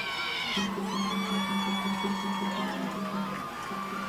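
Band music with long held notes, typical of a school band playing in the stands at a football game.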